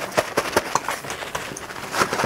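Paper kitchen towel crinkling and rustling under gloved hands as whole raw trout are patted dry, a quick, irregular run of crinkles and soft pats.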